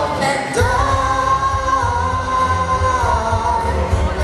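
A pop song performed live: a woman sings into a handheld microphone over a backing track with a steady bass line. She holds one long note from about half a second in until about three seconds in.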